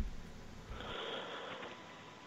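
A person drawing a breath before speaking, heard as faint noise over a telephone line, with a soft low thump just before it.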